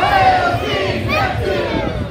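A crowd of people shouting together in unison, a chanted group response to the call 'All hail King Neptune!', thinning out near the end.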